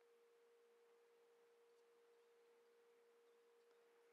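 Near silence: room tone with only a faint, steady, high hum.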